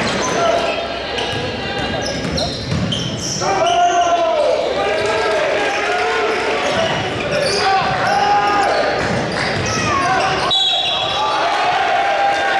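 Live basketball game sound on a hardwood gym court: sneakers squeaking in repeated rising and falling squeals, the ball bouncing, and voices from players and the crowd. An abrupt cut near the end jumps to another stretch of play.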